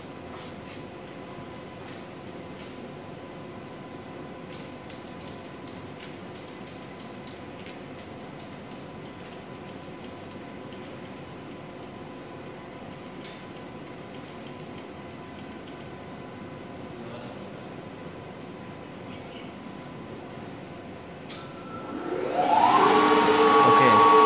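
Steady plant-room machinery hum with faint clicks. About 22 seconds in, an electric motor driving a condenser water pump starts up: its whine rises in pitch as it comes up to speed, then runs loud and steady. The pump has been started automatically by the control panel once its motorized valve has had its 30-second delay.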